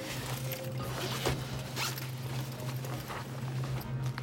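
A few short rasping, rustling scrapes over a steady low hum.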